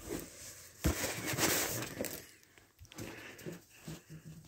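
Latex balloons being handled and set down on a carpet: rustling and handling noises with a dull thump about a second in, then a few lighter knocks.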